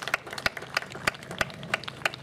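Light, scattered applause: several people clapping hands in an irregular patter.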